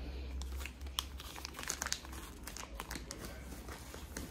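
Gift wrapping paper crinkling and rustling as a small wrapped present is handled, a run of short, irregular crackles.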